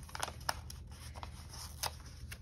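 Paper sticker sheets being handled and shuffled on a desk, giving a few short, sharp paper clicks, the two loudest about half a second in and near the end.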